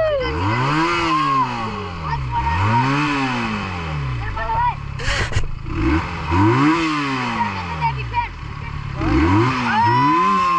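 A Benelli motorcycle engine revved in short throttle blips, about six times, each climbing and falling back over roughly a second, with a pause of a couple of seconds in the middle. Children's excited voices go on over it.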